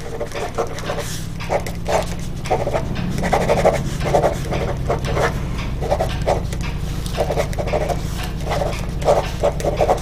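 Pen writing on a spiral notepad on a hard stone counter: short scratchy strokes in irregular bunches as words are written, over a steady low hum.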